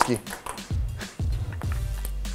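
Ping-pong ball clicking off paddles and table in a quick rally, over background music with a steady beat.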